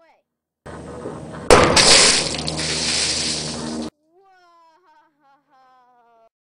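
A water balloon heated by a magnifying glass bursts about a second and a half in, with a sharp pop. Water then splashes and sprays onto a metal mesh table for about two seconds before the sound cuts off abruptly. A lower hiss starts a little before the pop.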